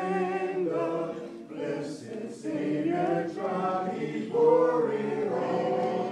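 A congregation singing a hymn a cappella, many voices in harmony holding long notes, with no instruments. The singing swells louder about four and a half seconds in.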